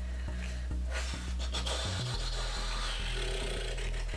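A woman breathing out hard and rustling at a tight sports bra, showing how uncomfortably it squeezes her chest, over low background music.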